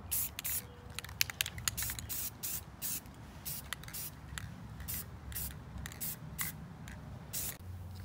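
Aerosol spray paint can sprayed in a rapid series of short hissing bursts, stopping shortly before the end.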